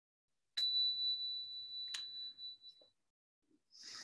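Small meditation bell struck twice, about a second and a half apart, each strike ringing with one clear high tone that fades away within a second or so: the signal ending a period of silent meditation.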